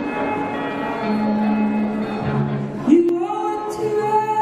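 A man singing long, held notes with an acoustic guitar in a live solo performance, sliding up into a new note about three seconds in.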